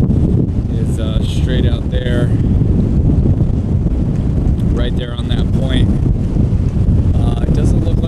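Gale-force wind blasting across the microphone: a loud, unbroken low rumble with no let-up, mixed with the wash of wind-driven chop.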